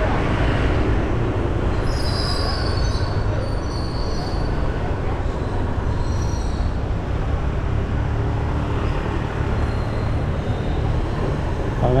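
Ride on a moving motorbike: a steady low rumble of engine, road and wind on the microphone, with thin high-pitched squeals about two seconds in and again around six seconds.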